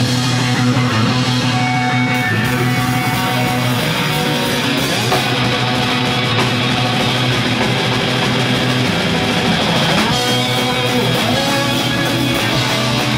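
Hardcore punk band playing live: electric guitars and drum kit, loud and dense without a break.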